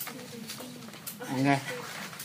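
One short spoken word a little over a second in, over faint low pitched background sounds.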